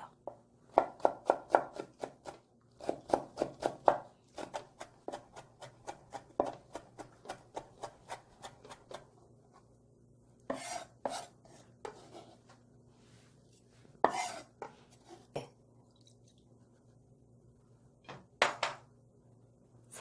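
Kitchen knife finely chopping green chili peppers on a wooden cutting board: quick, even runs of chops at about five a second for the first nine seconds or so, then a few scattered knocks.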